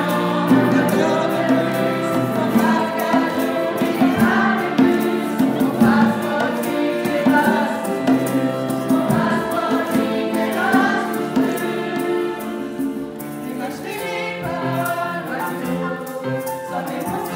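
Live school ensemble performing a pop-style song: a group of voices singing in Luxembourgish through microphones, accompanied by violins, grand piano and conga drums.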